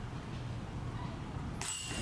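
Faint outdoor background, then near the end a disc golf putt hits the basket's chains: a sudden metallic jingle that keeps ringing.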